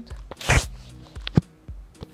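A short burst of rustling noise about half a second in, then a single sharp click, over faint background music.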